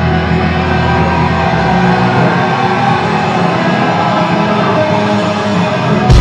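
Live post-hardcore rock band playing an instrumental passage on electric guitars, bass and drums, loud and dense. The deepest bass drops away about two seconds in, and the band hits hard again right at the end.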